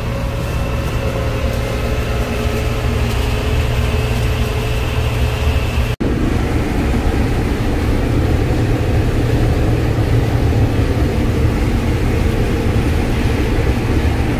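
John Deere combine harvester running, heard from inside the cab: a steady low engine drone with faint steady whine tones. After a cut about six seconds in, the noise grows denser and rougher as the combine works through standing corn.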